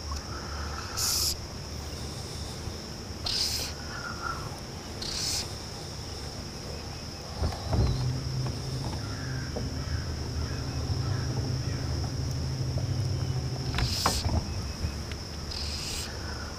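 Insects chirring steadily and high-pitched in the trees, with several short swishes of fly line as the rod is false-cast. A low steady hum comes in for about six seconds in the middle.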